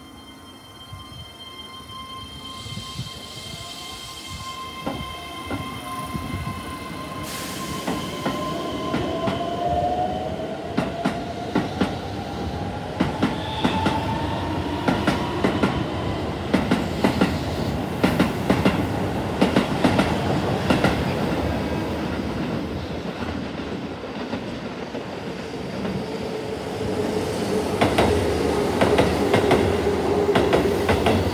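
Keihan 3000 series electric train pulling away and accelerating. A steady high whine at the start gives way to a motor whine rising in pitch, and the wheels clatter over rail joints and points, louder and faster as it goes. Near the end a second train passes close by, adding more clatter.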